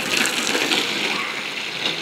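Water from a garden hose splashing steadily onto a coiled black pipe as it is washed of dust.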